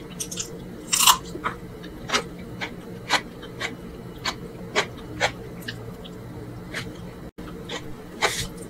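Close-miked eating sounds of a person chewing mansaf, rice and lamb in jameed sauce: wet chewing and lip smacks that make short sharp clicks about twice a second, the loudest about a second in. A steady low hum runs beneath.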